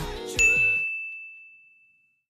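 Background pop music cuts off under a single high, clear ding that starts about half a second in and rings out, fading away over a second and a half.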